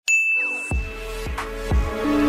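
A single bright ding sound effect, a subscribe-button notification chime, struck once and ringing out for about a second. Music with a low beat comes in under it a little over half a second in.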